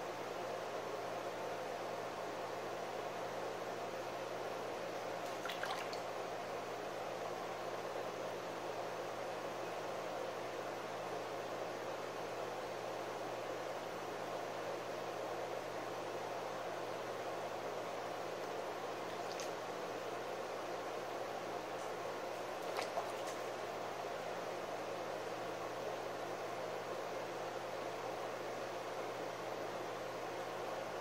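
Electric potter's wheel spinning steadily with a low hum, while wet hands work the clay wall of the pot, giving a soft, wet squishing; a couple of faint clicks about six seconds in and again past twenty seconds.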